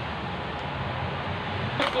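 Steady low hum and hiss of background machine noise in a small room, with a short sharp click near the end.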